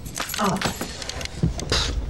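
A bunch of keys jangling as it is tossed and lands on a carpeted floor, with a brighter jangle near the end.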